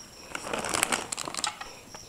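Plastic packaging crinkling and rustling as it is handled: a dense run of small crackles lasting about a second.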